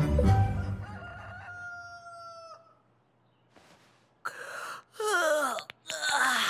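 A cartoon scene-transition sting: a low thump with held musical tones that fade away over about two and a half seconds. Then, near the end, a rooster crows in two loud calls.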